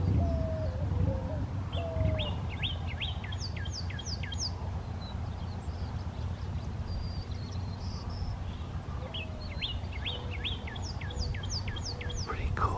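Male Northern Cardinal singing two phrases, each a quick run of down-slurred whistled notes, one about two seconds in and another near the end. A White-winged Dove coos low in the first two seconds.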